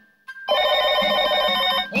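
A bright, steady ringing made of many tones at once, held for about a second and a half after a short silence and cutting off suddenly: a cartoon sound effect.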